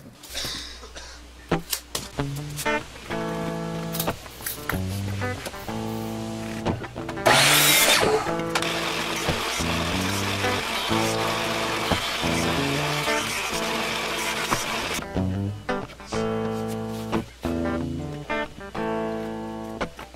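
Background music with plucked-string notes throughout. From about a third of the way in to about three quarters, a Delta 6-inch motorized jointer runs with a steady, loud rushing noise as a board is fed across its cutterhead, then stops abruptly.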